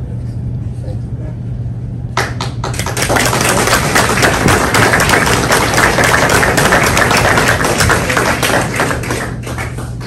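Audience applauding: a few scattered claps about two seconds in swell into full applause, which fades away near the end.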